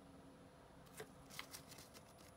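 A deck of playing cards being handled in the hand, with a few faint flicks and rustles of the cards in the second half.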